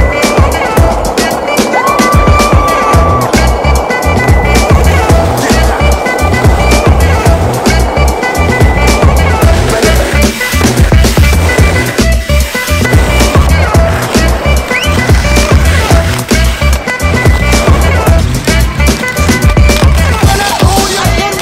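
Soundtrack music with a steady beat, over the rolling rumble of quad roller-skate wheels on pavement.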